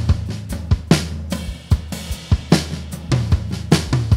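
Gretsch Catalina Club drum kit with mahogany shells, tuned extremely low, played in a busy groove: quick strikes on the toms, snare and bass drum with cymbals, and the low drums ring on under each hit in a big, warm sound.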